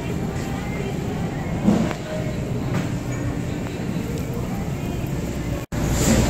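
Supermarket interior ambience: a steady low rumble with indistinct voices of shoppers. The sound drops out for an instant near the end.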